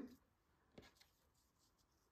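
Near silence: quiet room tone, with a faint click a little under a second in and a weaker one just after.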